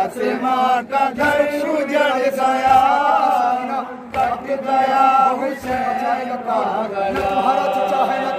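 A man's voice leads an unaccompanied Urdu noha, a Shia lament, chanted through a microphone with other men's voices joining in. Dull thumps fall roughly every second and a half: mourners beating their chests (matam).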